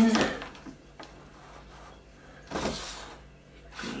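Handling noises from a switched-off compact trim router as its cutting depth is reset and it is moved on its sled: a single sharp click about a second in, then a brief scrape a little past halfway.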